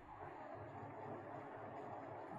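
Faint steady background noise with a weak low hum: room tone over an open video-call microphone.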